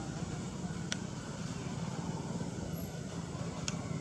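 Steady low background rumble outdoors, with a couple of brief high clicks about a second in and near the end.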